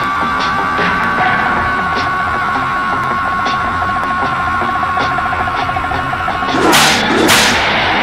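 A man's long, drawn-out scream held on one pitch and slowly sinking, an exaggerated mock cry of pain, over rock music. Near the end come two loud, harsh bursts.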